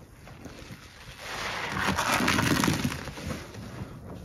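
Hands squishing and swishing through thick cleaner suds in a sink of water, the foam crackling. The sound swells about a second in and fades near the end.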